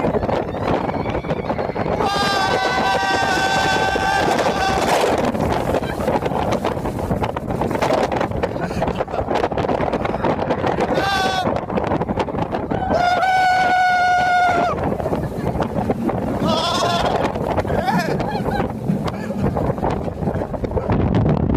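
Roller coaster riders letting out long held yells four times, the longest about three seconds. Steady wind noise on the microphone and ride noise run underneath.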